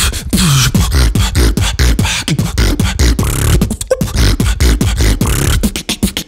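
A human beatboxer performing a fast, dense beat into a close microphone: sharp clicks and hi-hat-like hisses over deep kick sounds that drop in pitch.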